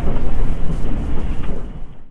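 Passenger train running, heard from inside the carriage as a loud, steady low rumble that fades out near the end.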